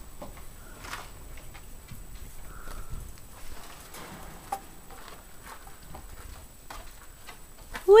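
Handheld camera handling noise: scattered soft clicks and rustling as the camera is swung about.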